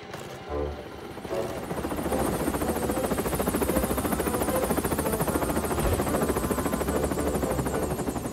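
Helicopter rotor chopping, fading in after about a second and then running steadily as the helicopter hovers and touches down, with background music underneath.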